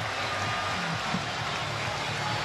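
Steady stadium crowd noise from a football match broadcast: an even wash of many distant voices, with no single sound standing out.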